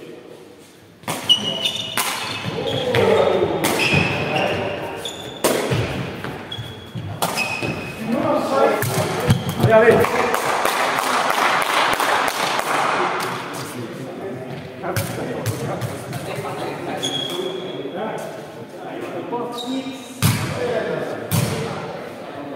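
A sepak takraw ball being kicked back and forth in a rally, a run of sharp smacks echoing around a large hall, with players shouting. About ten seconds in comes a few seconds of clapping and cheering as the point ends, and a few more kicks follow near the end.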